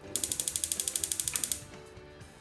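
Gas hob's electric spark igniter clicking rapidly, about fourteen clicks a second for about a second and a half, as the burner is lit. Soft background music plays underneath.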